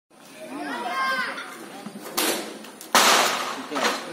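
Men shouting, then a bull ramming into metal: a short crash about two seconds in and a louder bang with a rattling tail just before three seconds.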